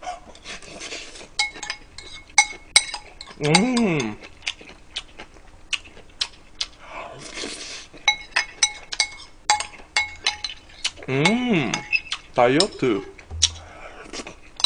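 A metal spoon clinking and scraping against a ceramic rice bowl in many quick, irregular taps while someone eats. A few short vocal sounds rise and fall, once about a quarter of the way in and twice near the end.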